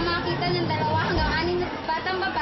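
Speech only: a girl's voice reading aloud from a script in Filipino, with some background chatter.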